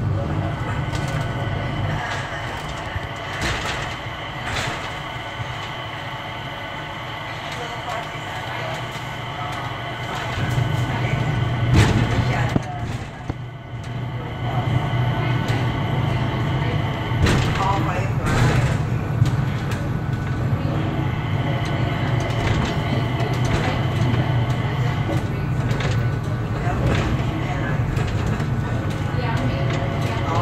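Cabin noise of the Changi Airport Skytrain, a rubber-tyred automated people mover, running along its guideway: a steady low hum with a thin high whine on top. It grows louder about ten seconds in, with a single sharp knock shortly after.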